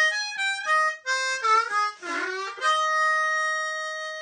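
Diatonic blues harmonica played solo with a tongue-block embouchure: a quick run of short notes, with octaves in places, then one long held note that slowly fades.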